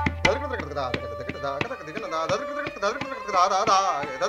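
Tabla played in a fast run of crisp, ringing strokes. A deep bass tone from the bayan dies away in the first second and a half. A wavering pitched line rises over the strokes near the end.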